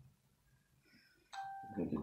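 An electronic chime sounds about a second and a quarter in: one steady tone held for about half a second, then a higher tone as a man starts speaking.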